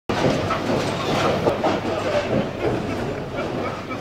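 Bowling alley din: a steady rolling rumble with irregular clatter from bowling balls on the lanes and the ball return.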